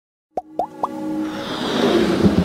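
Electronic logo-intro sound effects: three quick upward-gliding blips in the first second, then a rising riser swell with a held chord that grows steadily louder.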